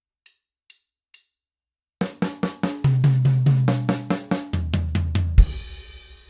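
A few light clicks count off the tempo, then about two seconds in a drum kit plays a fill in even 16th notes: one beat on the snare, one on the first tom, one on the snare again, one on the lower floor tom. It ends near the end with a crash cymbal and bass drum struck together, the crash ringing out.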